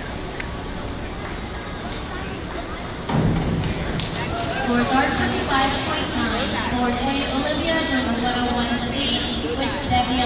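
A springboard diver hitting the water with a splash about three seconds in, over the steady hum of an indoor pool hall. Voices follow the entry.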